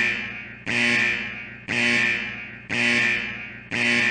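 Alert buzzer sound effect: an electronic buzzing tone sounding five times, about once a second, each beep fading out before the next.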